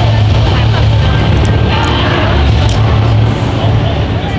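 Loud, steady low droning rumble of a haunted maze's ambient soundscape, with faint voices and a few short high ticks over it.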